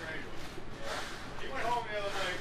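Faint sound of wet concrete being screeded by hand: a straightedge scraping and sloshing across the fresh pour. Faint men's voices can be heard in the second half.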